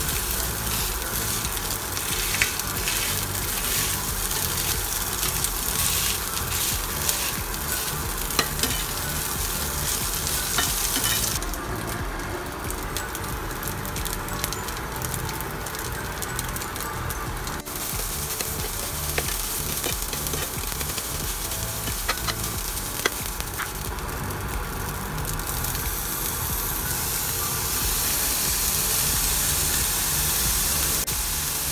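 Garlic fried rice sizzling in a nonstick frying pan while a spatula stirs and scrapes through it, with frequent short taps of the spatula against the pan.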